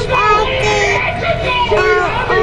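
A child's singing voice with music, held notes sliding from one to the next.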